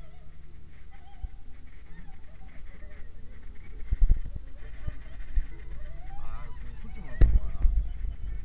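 Steady road rumble inside a moving car, with heavy thumps about four seconds in and again near the end. Over it, a muffled voice with wavering pitch.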